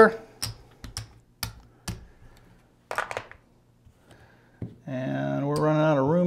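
Casino chips clicking against each other as they are picked up and set down on a craps table: a run of single sharp clicks, with a quick flurry about three seconds in. Near the end a man's voice comes in with a long, drawn-out, steady-pitched vocal sound.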